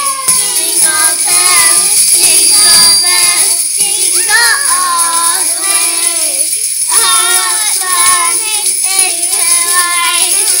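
Preschool children's choir singing a Christmas song with musical accompaniment, in sung phrases with a short break about seven seconds in, and jingle bells ringing throughout.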